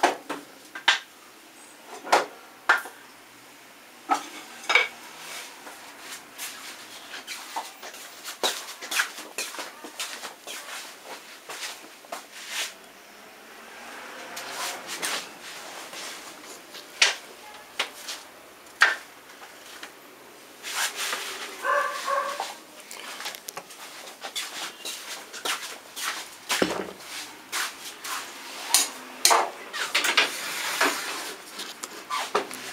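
Wooden offcuts and boards being handled, stacked and set down, giving scattered sharp knocks and clacks of wood against wood and metal at irregular intervals. The loudest come about halfway through, with a duller thump a little before the end.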